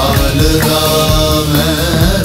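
Music: a Bollywood film song playing, with a drum beat under a sustained, winding melodic line.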